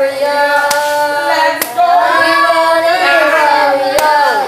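A female voice singing unaccompanied, holding long notes that slide up and down without clear words. Two sharp clicks cut in under the singing, the first just under a second in and the second about a second later.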